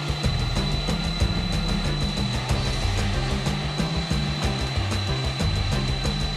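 Background music with a moving bass line, under the steady rush and high whine of a jet airliner's engines running on the runway.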